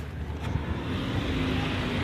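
A car's engine hum on the street, low and steady and growing slightly louder.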